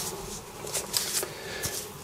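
Faint rustling with a few light knocks: an airsoft rifle being handled and shifted on a cloth.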